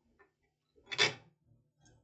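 A single brief click about a second in, as a circuit board is handled.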